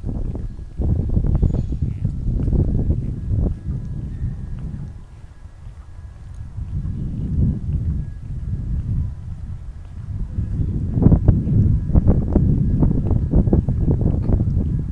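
Footsteps of a person walking on a paved pool deck, with a low rumble of wind or handling noise on the phone's microphone that swells and fades.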